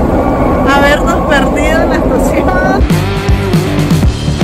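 A woman's voice over the loud low rumble of a metro train running. Near the end it cuts to background rock music with a steady beat and guitar.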